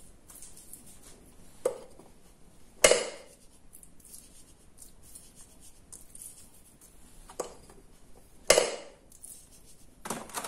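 Four short, sharp knocks of kitchen handling on a counter and wooden cutting board, the loudest about three seconds in and another about a second before the end, between faint handling sounds while salt is sprinkled by hand over raw pork fillets.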